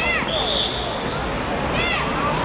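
Sound of a football game on a hard court: short squeaks at the start and again near the end, ball thuds, and players' voices. A brief high steady tone sounds about half a second in.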